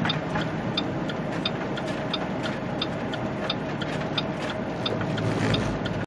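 Semi-truck cab at highway speed: steady engine drone and road noise. A light, regular ticking runs on top, about three ticks a second.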